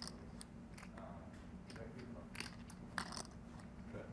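Poker chips clicking against each other, a few short sharp clicks spread irregularly, as a hand handles a chip stack, over a low steady hum.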